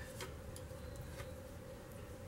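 A few faint clicks of fabric scissors being picked up and opened over tulle, against a low steady room hum.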